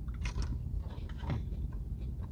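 A person biting into and chewing a tater tot, with crisp crunches about a quarter second in and again around a second in, over a low steady hum.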